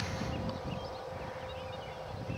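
Outdoor background with a low rumble from the camera being handled, and faint high chirps scattered through it.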